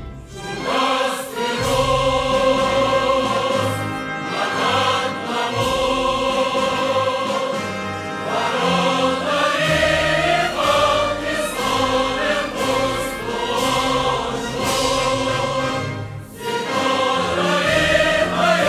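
Background music: a choir singing slow, long-held chords that change every second or two.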